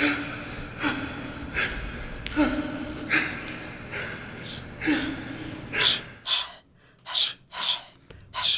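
A man's heavy rhythmic breathing: sharp gasps about once a second, several with a short voiced grunt. Near the end they turn into louder, hissing breaths with quiet between them.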